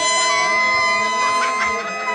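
A small mouth-blown instrument cupped in the hands and played at the lips, sounding several steady notes at once with a slight waver.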